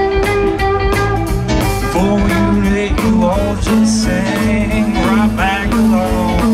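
Live rock band playing an instrumental passage, with electric guitars, bass, drums and keyboards. A lead line slides and bends between notes.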